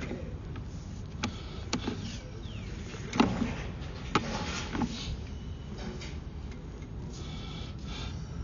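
Sewer inspection camera's push cable being fed down a drain line: scattered sharp clicks and knocks, the loudest about three seconds in, over a steady low rumble.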